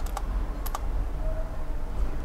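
Computer keyboard keys pressed a few times: a quick cluster of keystrokes right at the start and another couple about two-thirds of a second in, over a steady low hum.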